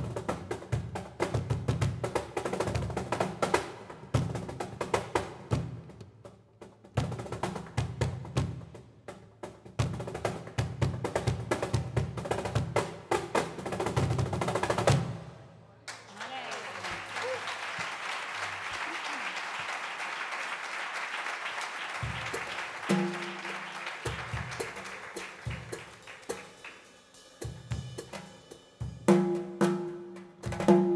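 Cajón and hand-percussion solo: fast, dense hand strikes with deep bass thumps that stop abruptly about halfway. A steady hissing wash follows and fades slowly, and scattered low drum hits return near the end.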